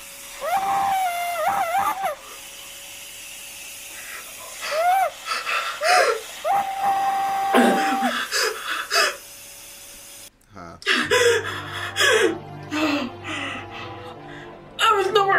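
Running vacuum cleaner with a steady tone, its nozzle squealing as it is pushed over wooden drawer fronts. The squeals slide up and down in pitch, and one whistle is held flat for over a second. The sound cuts off abruptly about ten seconds in.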